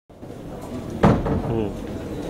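A single sudden knock about a second in, like a door or cupboard shutting, followed by a brief stretch of voice in a room.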